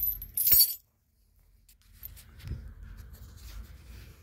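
A metal chain leash jingles briefly with a sharp clink in the first second, then the sound drops out for about a second. Faint rustling follows, with a soft thud about halfway through.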